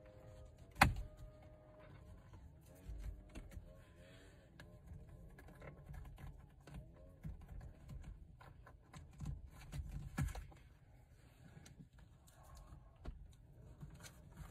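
Handling noise as a steering wheel cover is stretched and pushed onto the wheel rim: faint rubbing with scattered small clicks and knocks, and one sharper click about a second in.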